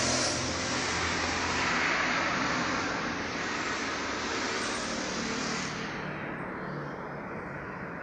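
Road traffic on a city street: a vehicle passing, its engine and tyre noise strongest in the first couple of seconds and fading away after about six seconds.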